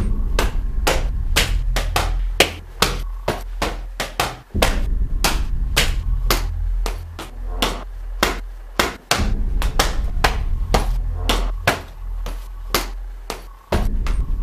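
A quick, uneven run of sharp slaps and knocks, about three a second, over a steady low rumble that drops out briefly three times.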